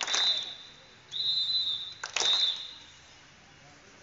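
A whistle blown in three short blasts, the second one longest, keeping time for a group exercise drill. Sharp cracks mark the start of the first and last blasts.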